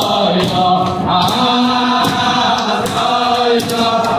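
A large crowd of young men singing a wordless niggun together in unison, accompanied by steady rhythmic hand-clapping.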